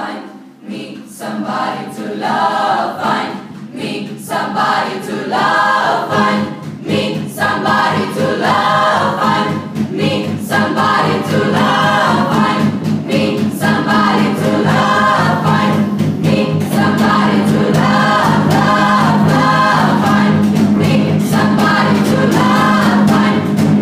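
A group of voices singing together. Steady low held notes join about six seconds in, and from there the singing is fuller and louder.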